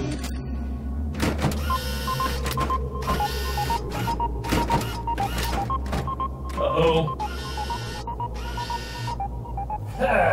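Sci-fi soundtrack: a low pulsing music bed under electronic beeps and a motorised whirring that slowly falls in pitch over several seconds, with a few sharp metallic knocks.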